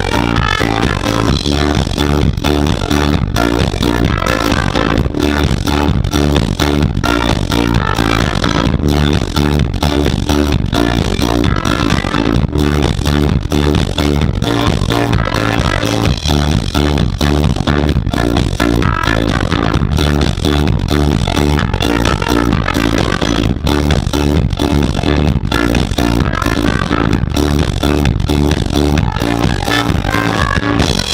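Live swing band playing amplified through a PA: drums keeping a steady beat, guitar and trumpet.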